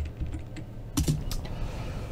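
Computer keyboard keys clicking: a few scattered light presses, with two sharper clicks about a second in, over a low steady hum.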